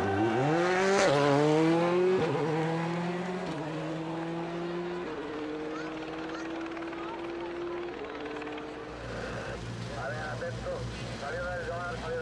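Rally car engine accelerating hard up through the gears, its pitch climbing and dropping back at four gearshifts, slowly fading. From about nine seconds in, people's voices take over.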